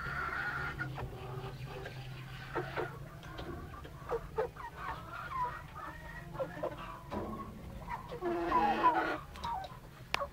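Small flock of fancy bantam hens and roosters clucking, with short scattered calls throughout and a busier run of calls near the end.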